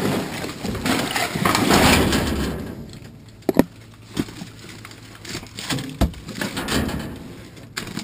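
Plastic trash bag full of pill bottles rustling and rattling as it is heaved aside, for about two and a half seconds. Then a few separate sharp clicks and knocks as the trash is picked at with a reacher-grabber tool.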